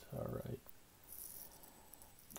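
A short murmured voice, then the faint rustle of glossy baseball cards sliding against each other as one is slipped off the stack about a second in.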